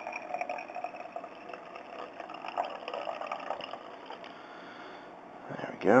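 Hydrochloric acid being poured into a glass jar of ammonium nitrate solution, a faint, uneven liquid sound that fades out after about four seconds.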